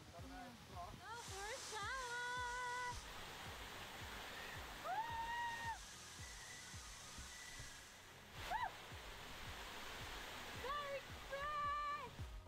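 Waterfall water pouring and splashing in a steady hiss, mixed with background music that has a regular low beat and a high voice holding several long notes.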